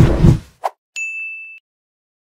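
Promo sound effects: a low whoosh that fades out within the first half-second, a brief blip, then a single bright ding that holds for about half a second and cuts off abruptly.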